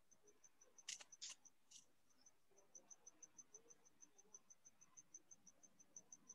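Near silence: a few faint clicks about a second in, then a faint high-pitched chirp repeating evenly, about five times a second.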